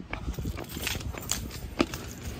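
Canvas sneakers landing on a concrete sidewalk while hopping through a hopscotch grid: a few short footfalls about half a second apart.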